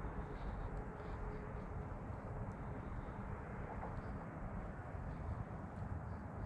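Steady low rumble of distant highway traffic.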